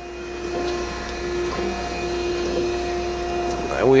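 Okamoto ACC-1632DX hydraulic surface grinder running with its hydraulics and spindle on and the table and cross slide moving: a steady mechanical hum with a low, even tone that comes in about half a second in.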